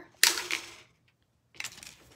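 Wire cutters snipping through a piece of heavy copper wire: one sharp snap about a quarter-second in, followed near the end by a few small clicks of the wire and tool being handled.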